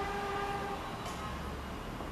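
A horn sounding one steady note that stops about a second in, over a low steady background hum.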